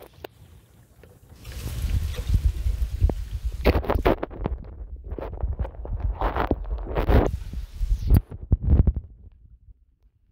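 Wind buffeting the microphone: a low, gusting rumble that swells about a second in and dies away near the end.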